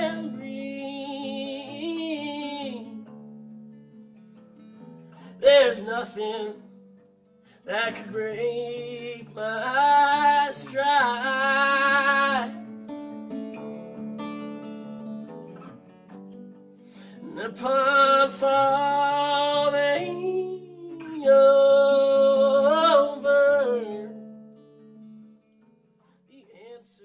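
A man singing solo with acoustic guitar accompaniment: sung phrases over held guitar chords, with short gaps where only the guitar rings. Near the end the song dies away.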